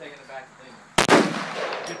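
A single loud shot from a large stainless semi-automatic pistol about a second in, followed by a short echoing tail.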